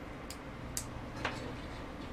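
Three faint clicks about half a second apart as the inline cord switch of an electric lantern is switched off and handled, over a steady low hum.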